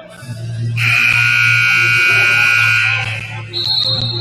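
Gym scoreboard horn sounding one long buzzing blast of about two seconds, starting about a second in. Near the end a shrill steady whistle-like tone follows.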